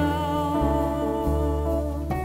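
Live jazz band: a male voice holds a long, slightly wavering sung note over double bass and archtop guitar.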